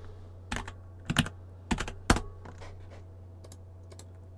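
Computer keyboard being typed on: a handful of short, sharp keystrokes at irregular intervals, over a steady low hum.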